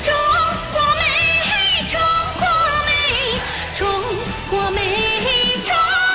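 A woman singing a Chinese pop ballad with vibrato over a backing track with a beat.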